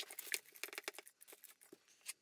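Thin blue plastic sheeting crinkling faintly as it is handled: a quick run of small crackles that thins out after about the first second.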